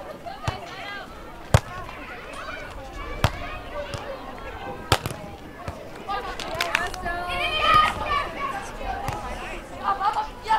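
Beach volleyball being played: four sharp smacks of hands and arms striking the ball, about a second and a half apart, the loudest about one and a half seconds in. Players' and onlookers' voices carry underneath and grow louder in the second half.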